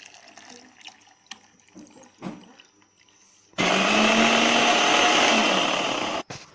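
Electric mixer grinder blending a liquid milk-and-khoa kulfi mixture. After a few faint clicks and knocks, the motor starts abruptly about three and a half seconds in, runs at full speed with a steady hum for about two and a half seconds, and cuts off at the end.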